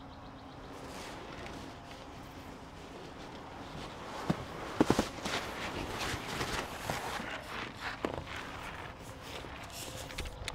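Camera handling noise and rustling movement: a quiet first few seconds, then, from about four seconds in, a run of sharp irregular knocks and clicks with rustling, as the camera is carried over the forest floor.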